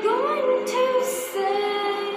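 A girl singing a slow phrase of long held notes into a handheld microphone.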